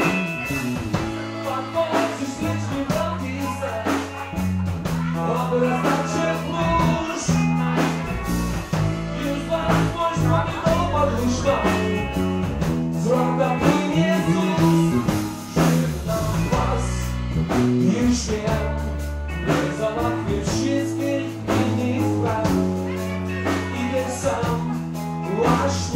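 Live cover band playing a rock number, with a drum kit keeping a steady beat under held bass notes and guitar.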